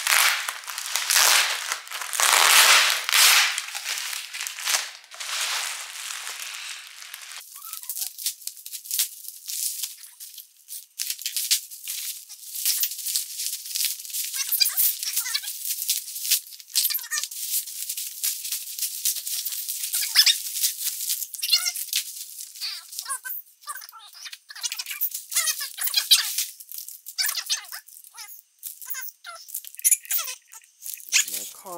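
Bubble wrap and plastic packaging crinkling and rustling as it is pulled open by hand: dense crackling for the first several seconds, then lighter, sparser crinkles and clicks.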